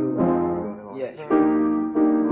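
Piano chords ringing and changing, with a voice singing along faintly; the sound thins out briefly in the middle before a new chord is struck about a second and a half in.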